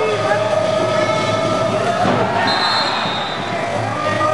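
Spectators shouting and cheering in a reverberant indoor swimming hall. A long, steady horn-like tone is held through the first half.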